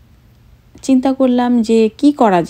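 A woman's narrating voice, starting about a second in after a short quiet gap.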